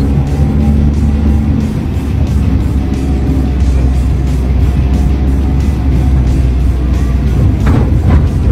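Car engine pulling in second gear up a hill at about 2000 rpm after an upshift, only just holding on at low revs, with background music over it.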